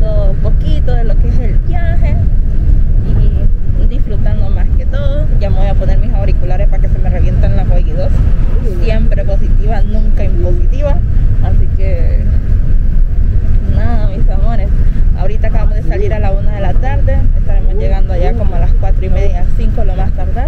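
Steady low rumble of a coach bus's engine and road noise heard inside the cabin, with people's voices talking throughout, too indistinct to make out words.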